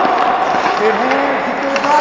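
Hockey skate blades scraping and carving on rink ice as players skate through a drill. A faint voice comes through weakly about a second in.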